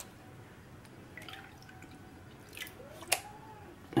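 Faint water sloshing and dripping as a plastic gold pan of muddy gravel is dipped and tilted in a tub of water, with a single sharp click about three seconds in.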